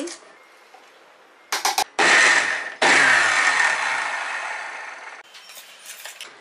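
Electric mixer grinder run in two short pulses with its small steel jar, coarsely crushing soaked chana dal; the second run winds down and slows after the button is released. A few light clicks come just before the first pulse and again near the end.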